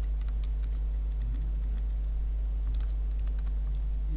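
Computer keyboard keys tapped in short, scattered runs of light clicks, over a steady low electrical hum.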